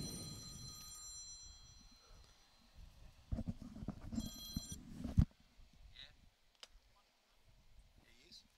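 A high electronic ringing tone sounds twice, the first fading out about a second in and a shorter one near the middle. Low rumbling and knocks run under the second ring, ending in a sharp knock.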